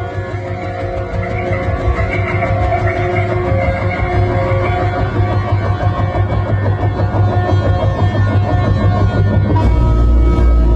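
Electronic music from a modular synthesizer, in a piece built on memories of cricket songs: layered sustained tones over a low drone, growing slowly louder. A fast-pulsing layer comes in around the middle, and the bass swells near the end.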